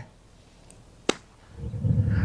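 Golf wedge striking a ball off hard-pan dirt: one sharp click about a second in. It is a slightly fat contact, the club thudding into the hard ground at the ball. A low rumble rises near the end.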